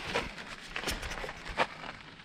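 Light rustling and scuffing from an action camera being handled and moved, with a few brief rustles over a faint hiss.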